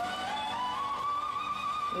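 Concert recording of a male singer's voice sliding up to a high note and holding it steady, over soft instrumental backing.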